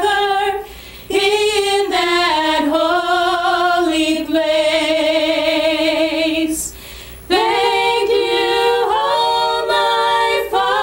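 Three women singing a gospel song together, with vibrato on the held notes. The singing breaks off briefly twice, just after the start and about seven seconds in, then comes back in several-part harmony.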